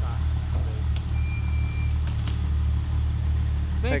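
Mud-covered off-road Jeep's engine running steadily at low speed, a deep even rumble as the Jeep crawls up a steep dirt slope.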